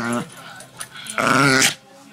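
A Shih Tzu making Chewbacca-like vocal sounds: a short call sliding down in pitch at the start, then a louder wavering call about half a second long just past the middle.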